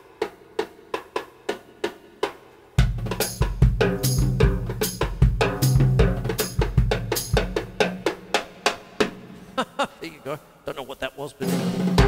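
Acoustic drum kit played with sticks: light, sharp stick clicks at an even pulse of about three a second, then about three seconds in a loud fill-heavy groove across toms, snare and bass drum, easing back to lighter strokes near the end. The sticks are held further up than the normal grip point, a changed fulcrum that alters their tone.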